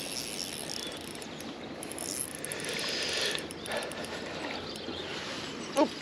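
Small spinning reel being cranked steadily while a hooked trout is played in on light line.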